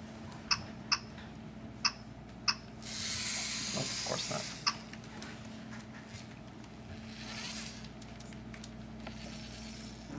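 Short sharp clicks, five of them in the first five seconds, as a Lego Mindstorms robot is handled and its buttons are pressed, with a brief hissing rustle about three to four and a half seconds in.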